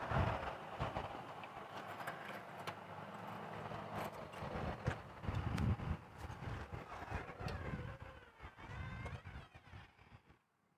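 Faint outdoor background with irregular low rumbles and scattered light clicks as a metal exterior door with a push bar is unlocked and pulled open.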